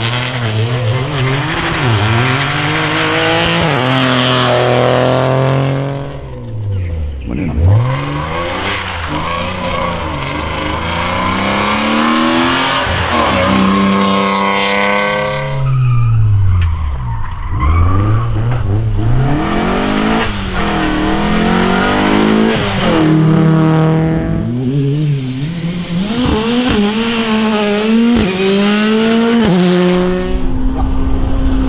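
Several rally cars race past one after another at full throttle. Their engines rev high, drop back at gear changes and climb again. The pitch swoops down sharply as each car goes by.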